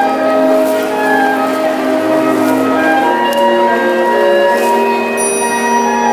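Wind band of brass and woodwinds playing a slow piece with long held notes and chords, accompanying a flag dance.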